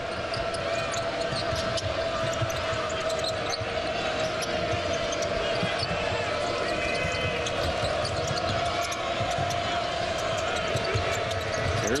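Basketball arena crowd noise, a steady din, with a basketball being dribbled on the hardwood floor and sneakers squeaking on the court.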